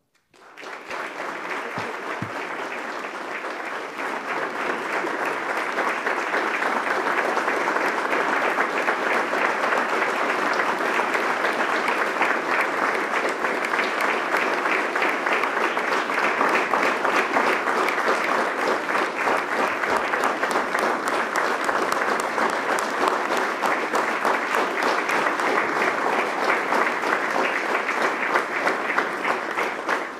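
Audience applauding: dense, steady clapping that starts just after the beginning and grows fuller about four seconds in.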